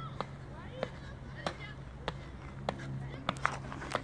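Sneakers landing on a rubberised running track as a man jumps through a row of mini hurdles: about ten light, irregularly spaced impacts.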